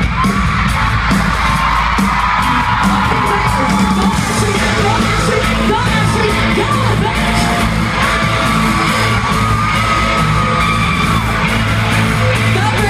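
Live pop music played loudly over an arena sound system, with heavy bass and a sung vocal line, and the audience yelling and whooping throughout.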